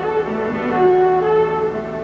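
Orchestral accompaniment with no voice: long held chords that move slowly from note to note over a sustained bass note.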